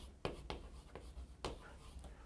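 Chalk writing on a chalkboard: a series of short, faint taps and scratches as letters are stroked onto the board.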